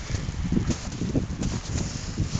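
Footsteps in fresh snow, a few soft irregular steps, with wind rumbling on the microphone.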